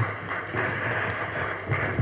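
Audience applause, a steady patter of many hands clapping.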